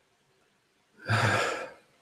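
A man exhales in one breathy sigh after swallowing a sip of whisky. It comes about a second in and lasts under a second.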